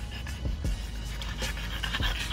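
French bulldogs panting, over background music with a steady beat.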